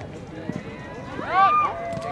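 Players' voices calling across an open soccer field, with one loud shout about a second and a half in and a single thud about half a second in.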